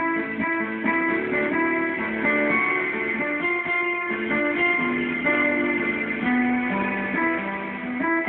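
Electronic keyboard played with both hands: a melody of short, changing notes over sustained lower chords.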